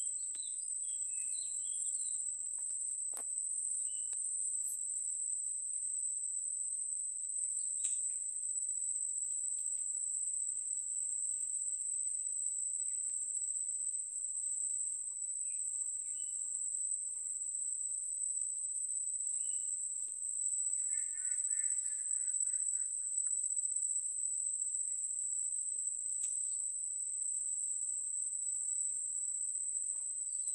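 A steady, high-pitched drone of insects calling, with faint short bird chirps scattered through it.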